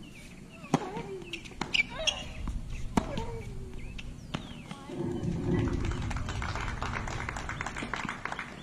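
Tennis ball struck by racquets in a rally on a hard court: a handful of sharp hits roughly a second apart, a player vocalising on some strokes. After about five seconds, spectators applaud as the point ends.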